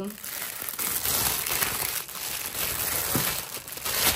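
Clear cellophane wrapping around an Easter egg crinkling steadily as it is pulled open by hand.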